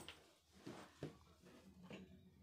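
Near silence: a faint steady low hum with a few soft clicks.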